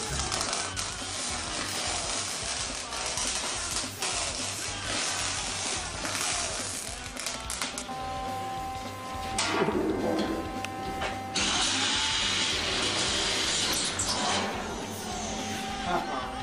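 Background music over an electric drill. The drill whines steadily and then bores into a steel panel, with a loud spell of drilling noise that starts and stops sharply about two-thirds of the way in.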